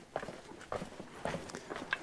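Footsteps walking on a sandy, stony dirt path: a few soft, irregular steps, faint.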